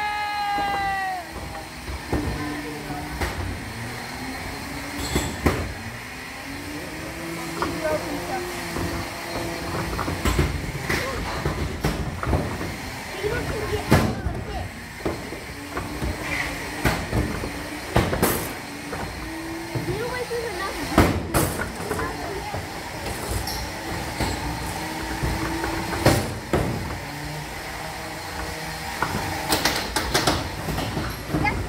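Beetleweight combat robots fighting in an enclosed arena: electric motors whining, rising and falling in pitch, with sharp impact clangs every few seconds.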